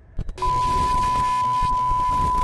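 A test-card sound effect: a loud rush of TV-style static with a steady high-pitched test tone held over it, starting about half a second in.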